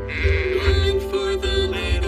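A cartoon sheep bleating over upbeat children's song music, the bleat wavering in the first half-second.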